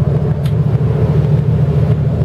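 Twin inboard engines of a Carver 41 motor yacht running at low speed, a steady low drone, heard from the flybridge helm while the port engine is put in forward gear.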